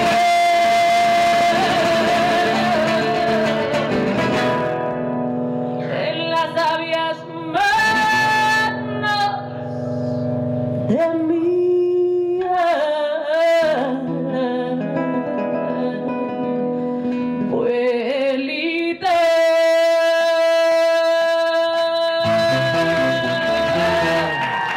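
A woman singing a slow song into a microphone, with long, bending held notes and one note held steadily for about five seconds near the end, over quieter instrumental accompaniment.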